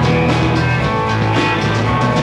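Live rock band playing an instrumental passage on electric guitar, bass, synth and drum kit, with steady drum and cymbal hits. It is recorded on a Wollensak 3M 1520 reel-to-reel tape machine.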